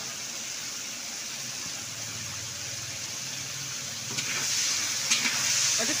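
Whole pointed gourds frying in oil in a large iron wok, a steady sizzle that grows louder about four seconds in, when the metal spatula is moved and clicks against the pan a couple of times.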